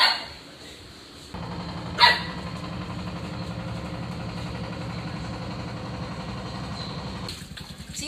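A sharp swish at the start and another about two seconds in, like fishing rods being cast, over a steady low hum of a small engine running that begins about a second in and stops shortly before the end.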